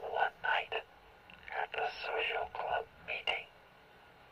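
A man's spoken voice, thin and filtered as if through a radio or megaphone, in short phrases with pauses: the spoken narration that opens the song.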